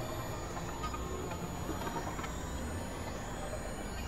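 Dense, layered experimental electronic noise and drones at a steady level, with a couple of high rising glides in the second half.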